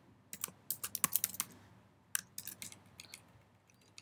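Typing on a computer keyboard: a quick run of keystrokes in the first second and a half, another short burst just after two seconds, then a few stray taps.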